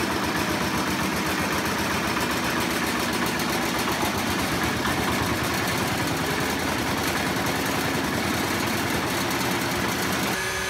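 Single-cylinder horizontal diesel engine running steadily at idle with a rapid, even chugging, fuelled through its intake with biosyngas from a gasifier reactor, which a diesel engine can run on once a little diesel has lit it and it is stable.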